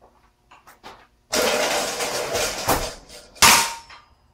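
Heavy yellow steel motorcycle lift being dragged and rattled across the garage floor for about two seconds, then set down with one loud metallic clang that rings briefly.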